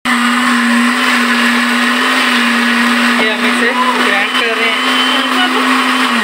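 Electric countertop blender running loudly and steadily, grinding yogurt and browned fried onions into a paste.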